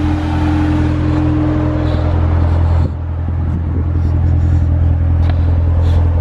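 Chevrolet Corvette's V8 engine idling steadily, a constant low drone; a higher tone in it drops away about halfway through.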